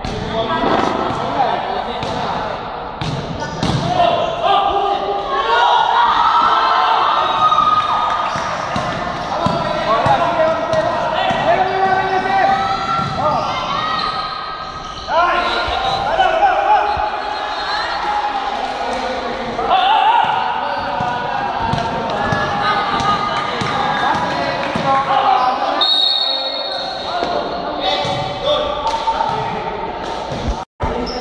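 A basketball bouncing on a concrete court, with repeated knocks throughout, under nearly constant calling and shouting from players and onlookers.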